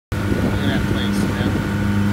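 Motorboat engine running steadily under way, a low even drone.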